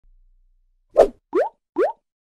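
Three quick cartoon pop sound effects, the last two rising in pitch like bloops, each short and about half a second apart.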